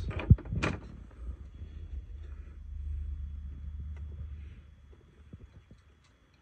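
Small hand-handling sounds of a plastic rocker-switch housing and its wires: a sharp click about a third of a second in, a smaller one just after, then a low rumble with a few faint taps that fades out near the end.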